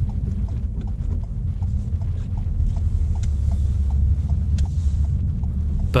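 Manual car's engine and road noise heard inside the cabin: a steady low rumble as the car slows and changes down from third to second gear. A light ticking repeats about twice a second throughout.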